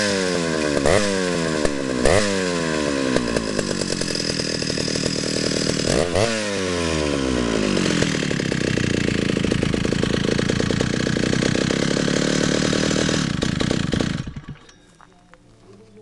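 Vintage Stihl 075AV two-stroke chainsaw engine revved in several quick throttle blips, each rising sharply and falling back, then idling steadily before it cuts off about fourteen seconds in.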